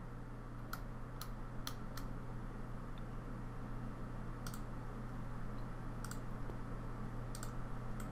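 Computer mouse clicking several times at scattered intervals, faint, over a steady low electrical hum.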